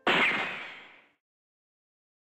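A swishing sound effect added in editing: it hits suddenly and loud, then fades out within about a second.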